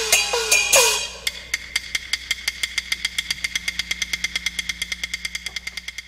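Chinese opera percussion accompanying stage action: a few loud gong strikes whose pitch drops after each hit, then from about a second in a rapid, even run of sharp wooden clicks from a clapper or woodblock, about nine a second, slowly fading away.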